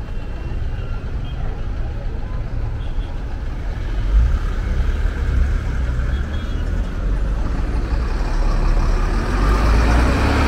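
Street traffic with a heavy dump truck's diesel engine rumbling. It grows louder about halfway through and again near the end as the truck comes close past.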